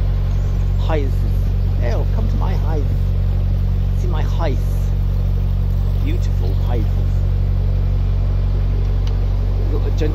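Narrowboat engine running steadily while the boat is under way, a constant low drone, with short stretches of voices over it.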